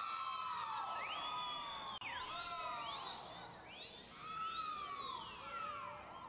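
Arena crowd whistling: many spectators' whistles overlap, each sliding up and down in pitch, easing off a little in the second half.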